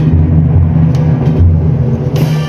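Procession band playing a slow march, led by low brass holding deep, pulsing notes, with a few light percussion strikes.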